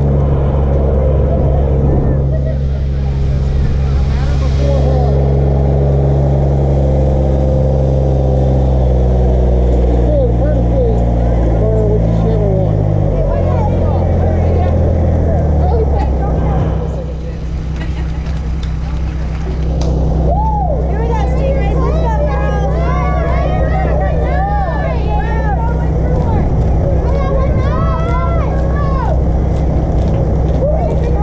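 A motor running steadily close by, its pitch stepping down partway through, with people's voices over it, most of them in the second half.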